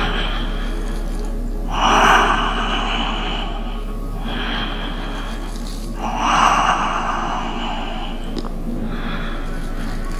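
A person breathing slowly and deeply close to the microphone, with two louder breaths about two and six seconds in and softer ones between, over a steady low electrical hum.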